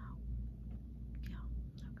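A woman's soft, breathy voice saying "no, no" in a few short snatches, over a steady low background hum.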